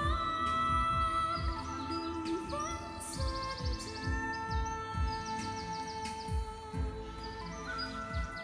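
Music with a regular bass beat about twice a second under held melody notes, with a few short high trills.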